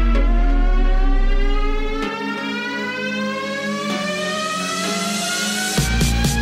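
Electronic dance music build-up: a long synth sweep rising slowly in pitch, with a low bass under it that drops out about two seconds in. A steady beat comes back in just before the end.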